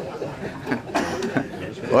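A roomful of people laughing and chuckling at a joke, mixed with scattered chatter.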